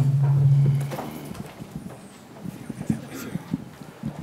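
Handling noise at a lectern: a low steady hum for about the first second, then a scatter of light knocks and taps as a folder and papers are handled on the podium.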